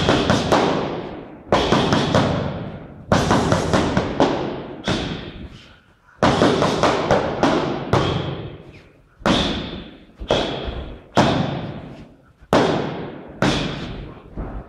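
Boxing-gloved punches thudding against padded striking sticks during Muay Thai pad work. The strikes land singly and in quick two- and three-hit combinations about once a second, each hit echoing and dying away slowly.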